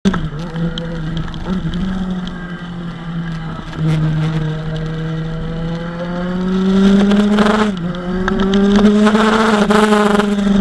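Kawasaki Ninja 1000's inline-four engine pulling hard under acceleration, its pitch climbing steadily, with a sharp dip and recovery just before eight seconds in as it shifts up, over wind noise.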